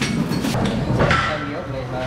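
A few knocks and clanks of metal over dense, steady foundry noise, with a voice in the background.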